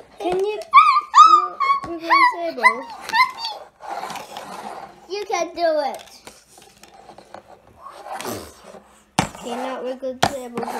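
A young child's high-pitched wordless play noises and squeals, rising and falling in pitch, with a second burst about five seconds in. A sharp knock comes about nine seconds in.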